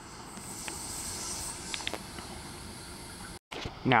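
Quiet railway platform ambience: a faint low rumble from a distant Sydney Waratah electric train with a steady high hiss over it and a few faint clicks. It cuts off abruptly shortly before the end.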